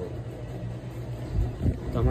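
Steady low background hum, with two dull thumps near the end from the phone being handled as it swings around.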